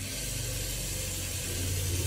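A steady low machine hum with a hiss over it; the hiss comes in suddenly at the start.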